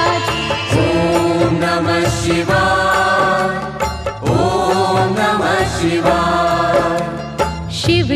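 Hindu devotional song: a voice chants long, wavering held lines over instrumental backing, with a new phrase starting about a second in and another about halfway through.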